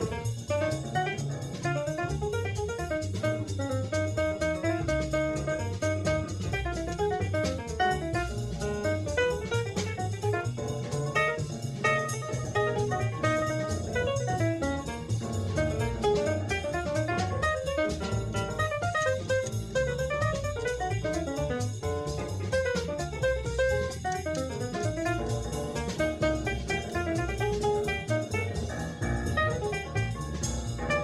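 Cool jazz quartet recording of trumpet, piano, upright bass and drum kit, playing continuously with a stream of moving notes over a steady rhythm section.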